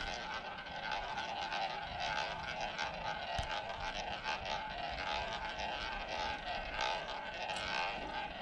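Roulette ball rolling around the track of a spinning wooden roulette wheel: a steady rolling whir with a faint regular ripple.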